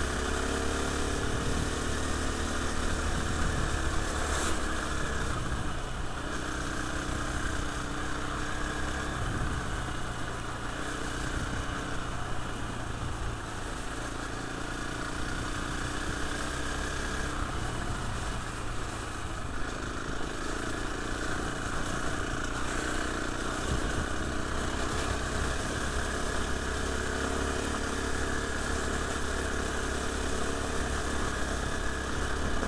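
KTM Freeride 350 single-cylinder four-stroke trail bike engine running on the move, its revs rising and falling with the throttle, with one sharp knock about four and a half seconds in.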